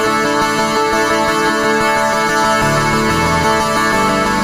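Modal Electronics Cobalt8X virtual-analogue synthesizer played on its keyboard: held chords with changing notes, joined by a deep bass part about two and a half seconds in.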